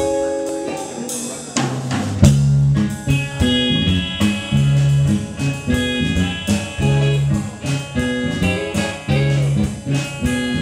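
Live rock band playing on stage: electric guitar chords ring out, then about two seconds in the drum kit and a bass guitar line come in and the band plays on with a steady beat.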